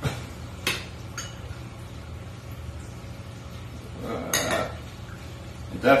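A metal fork clinking and scraping against a ceramic bowl while stirring macaroni, with three sharp clinks in the first second or so and another about four seconds in.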